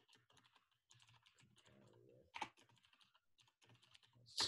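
Faint typing on a computer keyboard: an irregular run of soft keystrokes, with one sharper key click about two and a half seconds in.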